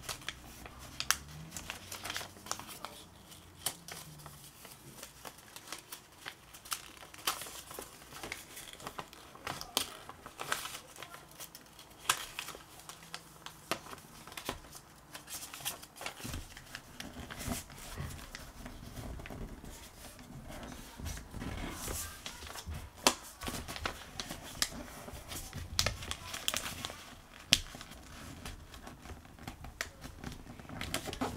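Sheet of printed paper being folded and creased by hand into a paper airplane: irregular rustling and crinkling with many short, sharp crackles throughout.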